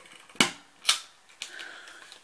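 Tombow Stamp Runner dot-adhesive applicator stamped down onto cardstock: two sharp clicks about half a second apart, then a fainter third.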